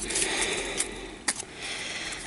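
Pokémon trading cards handled and slid through the hands: soft rustling of card stock with a few light clicks, the clearest a little over a second in.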